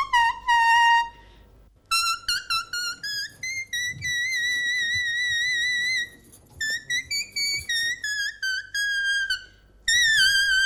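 A small handheld toy whistle-flute blown as a high melody with vibrato. It mixes quick short notes with longer held ones and breaks off briefly about a second in, around six seconds, and just before the end.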